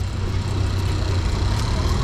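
Motorcycle engine running as it rides past in city street traffic, a steady low engine sound with road noise.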